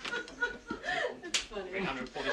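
People laughing and talking between takes, with one sharp impact about one and a half seconds in.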